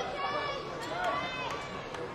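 Raised voices calling out, two shouts in the first second and a half, over the steady hubbub of a busy sports hall during a kickboxing bout.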